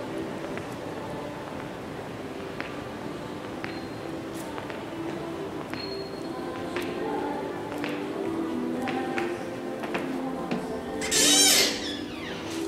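Background music with a melody of short stepping notes, over scattered faint clicks of footsteps on a hard floor. Near the end, a brief loud rattle as a locked glass-panelled double door is pushed and does not open.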